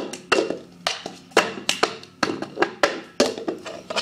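Cup-song routine played on a tabletop: hand claps, hand taps on the table and a cup lifted and knocked down on the surface, about a dozen sharp strikes in a quick rhythmic pattern.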